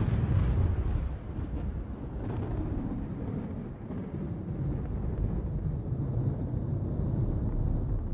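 A low, rumbling noise with no distinct tone, swelling and easing slightly, that fades somewhat near the end.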